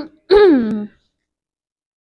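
A woman clears her throat once, about a third of a second in: a short pitched throat-clear that falls in pitch.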